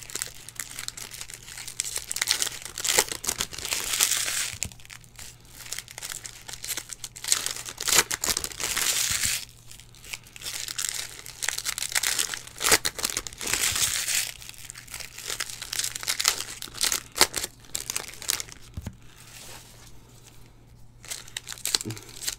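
Plastic trading-card pack wrappers from 2020 Panini Donruss football packs crinkling and tearing as packs are ripped open by hand, in repeated bursts a second or two long.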